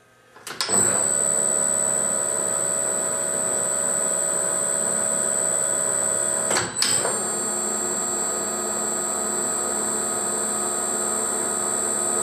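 Emco 20D metal lathe running under power with the threading half nuts engaged, a steady mechanical whine with high-pitched tones from the spindle drive and gearing. About six and a half seconds in the spindle stops briefly and is immediately restarted in reverse, then runs steadily again.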